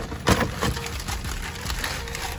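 Paper wrapping being pulled open and torn by hand: a run of crinkling, crackling rustles, loudest about a quarter second in.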